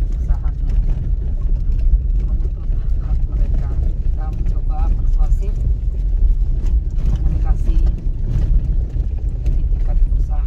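Steady low rumble of a vehicle driving over a rough gravel road, heard from inside the cabin, with occasional light knocks from the bumpy surface.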